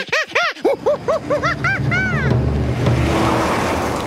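A chimpanzee hooting excitedly in a quick run of rising-and-falling calls that grow longer and higher, stopping about two seconds in. Under the calls a truck's engine rumbles in and swells, with a rush of tyres on dirt near the end.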